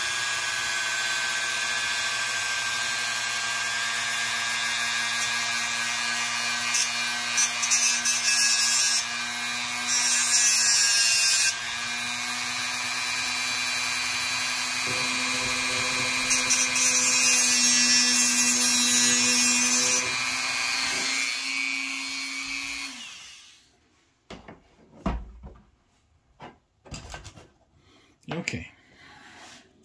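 Dremel rotary tool with a fiber cutoff wheel running at speed, with two louder stretches of grinding as the wheel cuts a slot into the head of a small brass screw. Near the end the motor winds down and stops, followed by a few light knocks.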